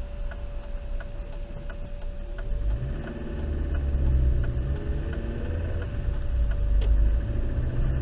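Car engine heard from inside the cabin, running low at first, then pulling away with rising revs about two and a half seconds in and running steadily after. Faint, regular ticks come about every 0.7 s.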